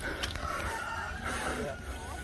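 A rooster crowing, one long drawn-out crow.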